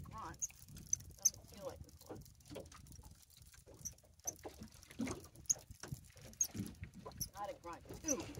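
Fishing reel being cranked to bring up a hooked fish, with soft irregular clicks and short high squeaks, under faint quiet talk.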